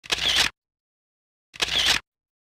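Camera shutter sound effect: two identical half-second bursts of rapid shutter clicks, about a second and a half apart, like paparazzi cameras firing.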